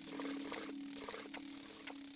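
A steady low drone, likely from the film's music or sound bed, with about five soft, scattered clicks over two seconds.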